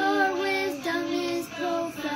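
A child singing a slow melody in held notes that step up and down, with short breaks between phrases.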